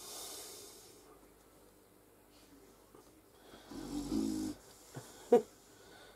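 A woman's non-speech vocal sounds: a breath out through the nose in the first second, a low, snore-like nasal grunt about four seconds in, and a short, sharp one, the loudest sound, about a second later.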